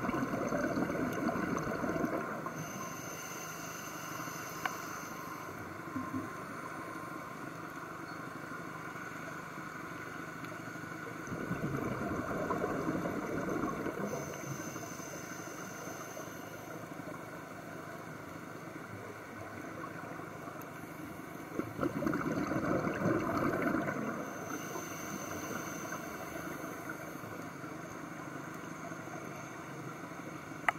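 Scuba diver breathing through a regulator, heard underwater: three loud rushes of exhaled bubbles about ten seconds apart, each followed by a fainter high hiss of inhaling.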